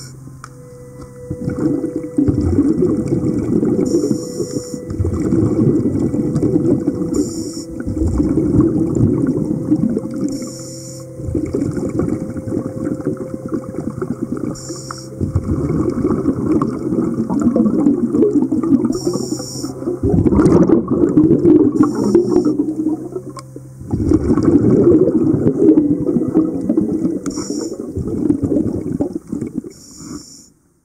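Scuba diver's regulator breathing underwater: a short hiss of inhalation about every four seconds and loud bubbling of exhaled air between, with a faint steady hum underneath.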